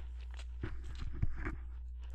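A steady low electrical hum, with a few faint, soft, short ticks and rustles scattered through it.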